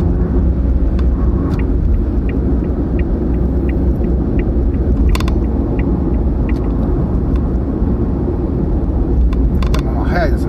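Steady road and engine rumble inside a car's cabin while driving on an expressway. Faint regular ticking, about one and a half ticks a second, runs for several seconds in the middle, with a single short click a little after five seconds.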